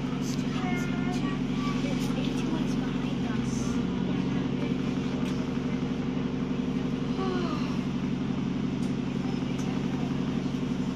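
ADL Enviro 400 bus engine running steadily as the bus drives along, heard from inside the passenger cabin; its lowest note shifts about three seconds in.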